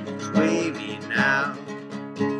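Acoustic guitar strummed in rhythm, with a man's singing voice coming in about a second in.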